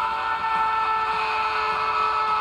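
A loud, steady chord of several held tones, sustained without a break or rhythm.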